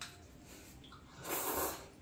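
A short, breathy puff of air from a child, starting a little over a second in and lasting under a second, against an otherwise quiet kitchen.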